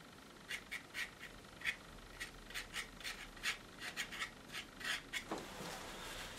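Palette knife scraping and dabbing oil paint onto the painting in a quick run of short, faint scratchy strokes, several a second, stopping about five seconds in.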